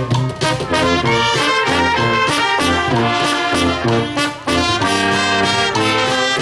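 A brass band of trumpets, trombones, saxophones and tubas playing live, over a steady bass-drum beat, with a short break in the phrase about four and a half seconds in.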